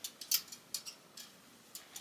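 Metal hanger hooks clicking against a metal clothing rail as hangers are pushed along it and one is taken off: a run of about eight light, irregular clicks.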